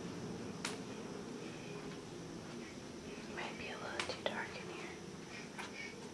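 Faint whispering with a few soft clicks over a low, steady room hum.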